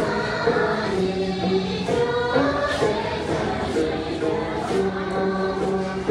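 Group of voices singing a Dolpo gorshey dance song in unison, in long held notes.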